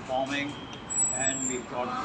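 A man speaking in Hindi-English, with a brief thin high tone about a second in.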